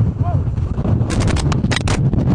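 Strong blizzard wind buffeting the microphone: a heavy, continuous low rumble, with a cluster of sharp crackles in the second half.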